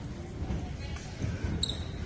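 Indistinct chatter and scattered low thuds in a gymnasium, with a brief high chirp near the end.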